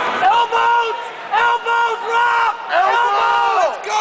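A fight spectator yelling, about five long high-pitched shouts in a row, over crowd noise in an arena.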